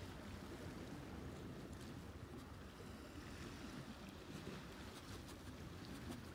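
Faint, steady seaside ambience: a low rumble of wind and surf with no distinct events.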